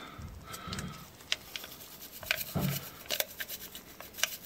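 MRE beverage-powder pouch being squeezed and tipped into an empty drinking glass: light crinkling of the pouch with scattered small ticks as the powder pours onto the glass.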